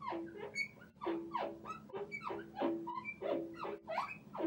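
A pen squeaking against a writing board as a word is written: a quick run of short squeaks, about three a second, many falling in pitch.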